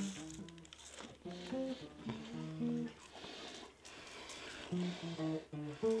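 Acoustic guitar played softly, plucking a slow line of single low notes, with a short pause about halfway through.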